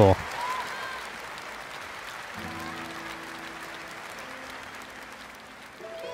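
Concert audience applauding after the song is announced, the clapping slowly dying down. From about two seconds in, low held chords of the song's intro sound under the applause.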